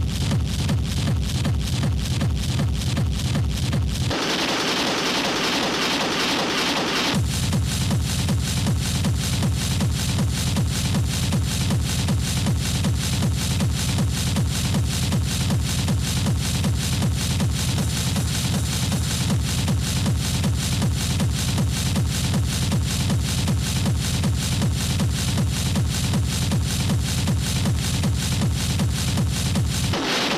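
Schranz hard techno DJ mix: a fast, pounding, even kick-drum beat with heavy bass. About four seconds in, the kick and bass cut out for roughly three seconds under a bright hissing sweep, then the beat drops back in.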